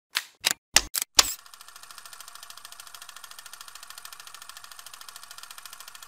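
Intro sound effect: five sharp clacks in the first second and a half, then a rapid, even clicking of about a dozen clicks a second.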